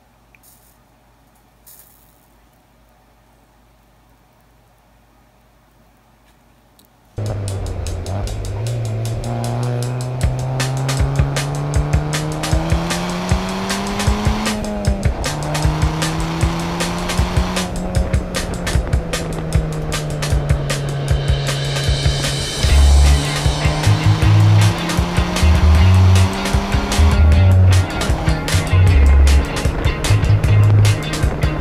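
Faint room sound for about seven seconds, then a car engine accelerating hard, its pitch climbing and dropping back at each gear change, mixed with music that has a heavy beat in its second half.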